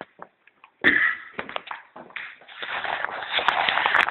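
Taps, knocks and rustling from a handheld camera being handled close to its microphone. A sharp burst comes about a second in, then scattered clicks, and a steadier rustle fills the second half.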